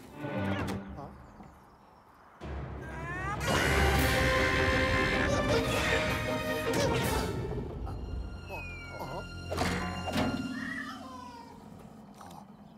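Cartoon Rabbid creatures yelling and babbling over cartoon music, with one long loud scream a few seconds in. Two thuds come near the end.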